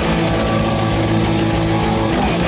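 Heavy metal band playing live: distorted electric guitars holding sustained chords over fast drumming, loud and dense.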